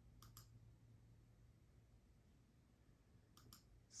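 Two pairs of faint, sharp computer mouse clicks, one just after the start and one about three and a half seconds in, against near-silent room tone.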